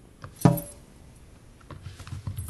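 A cat's collar tag gives one sharp metallic jingle with a brief ring about half a second in, as the cat swats and jumps. A few faint light taps follow near the end as it runs off.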